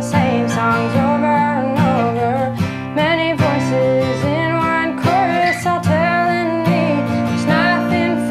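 A song: a guitar strummed in a steady rhythm with a man singing a melody over it.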